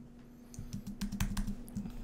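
Computer keyboard keys being pressed: a rapid run of about ten key clicks starting about half a second in.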